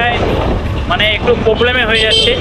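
A man talking over the steady running and road noise of a moving motorcycle, with wind on the microphone.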